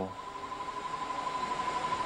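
A pause in a man's speech, filled by a steady high-pitched tone and an even background hiss.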